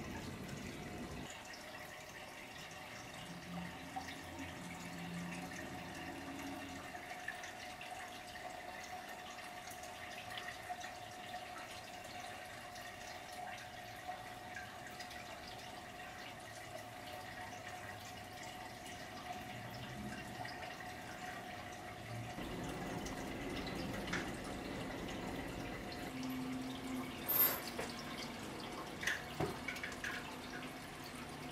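Aquarium filter trickling and dripping water over a steady hum, with a few faint clicks near the end.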